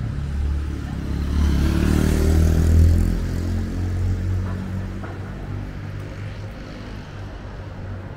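A motor vehicle's engine rumbling past close by on a city street. It swells to its loudest about three seconds in, then fades away.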